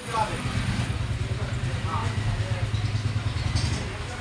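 A low, steady engine hum, with faint voices behind it.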